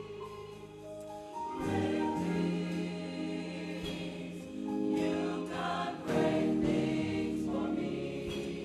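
Gospel choir singing long held chords, swelling louder about a second and a half in and again around five to six seconds in.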